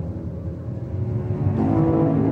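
Film soundtrack music: low held tones that dip slightly, then a new chord of sustained notes comes in about one and a half seconds in.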